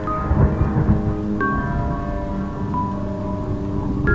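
A drumless break in a hip-hop instrumental: a rain-and-thunder sound effect with a low rumble in the first second or so, under a few sparse bell-like melody notes and held tones.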